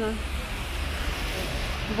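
Steady city street noise: traffic on a wet road, with a low rumble and an even hiss.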